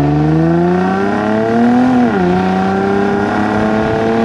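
Nissan 350GT's 3.5-litre V6 accelerating hard, heard from outside at the rear of the car: the revs climb steadily, drop sharply as the automatic gearbox changes up about two seconds in, then climb again.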